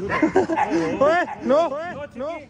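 A young dog yipping and whining during rough play-wrestling with a lion cub: a quick run of short high cries, each rising and falling in pitch, coming faster in the second half.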